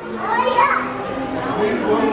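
People talking in a crowd, with a child's voice among them.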